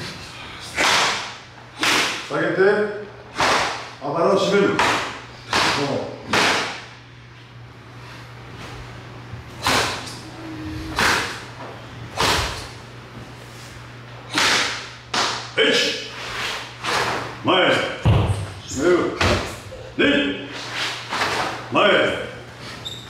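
An irregular series of sharp slaps and thuds of hand strikes landing on tensed bodies in karate gi during Uechi-ryu Sanchin: the master's shime testing, hitting the students to check the strength of their stance. A quieter stretch falls in the middle.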